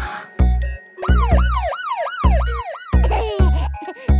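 Cartoon police-car siren sound effect: a fast up-and-down wail, about three sweeps a second, starting about a second in and lasting about two seconds. It plays over children's music with a steady bass-drum beat.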